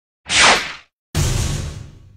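Edited-in sound effects: a short whoosh, then about a second in a sudden hit with a low boom that dies away.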